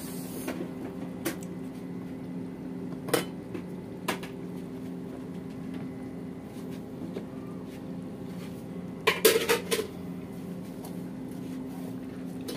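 A few sharp clinks of metal kitchen pots and utensils being handled, with a quick cluster of them about nine seconds in, over a steady low hum.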